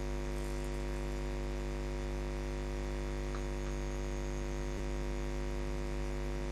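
Steady electrical mains hum in the recording, a low buzz with a stack of even overtones that stays level throughout.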